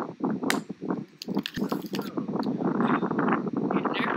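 Gusting wind buffeting the camera microphone in a dust storm, with irregular crackles and knocks in the first couple of seconds, then a rougher rush of wind noise from about halfway in.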